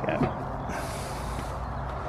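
Steady low background rumble of outdoor ambience.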